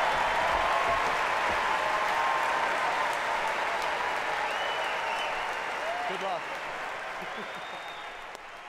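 Audience applauding and cheering after a live a cappella performance, with a few shouts and whoops over the clapping; the applause gradually grows quieter.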